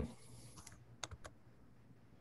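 A few faint computer keyboard keystrokes in quick succession, about a second in.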